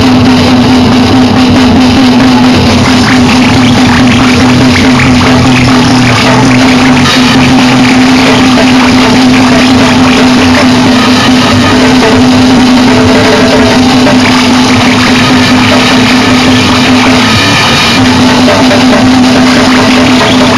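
Noisecore/gorenoise recording: a loud, dense wall of distorted noise over a steady low droning note, with no clear beat.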